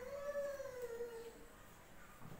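A dog howling: one long drawn-out call that rises a little in pitch, then sinks and fades out shortly before the end.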